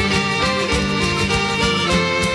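Scottish folk band playing an instrumental passage between sung verses, with a steady beat and no singing.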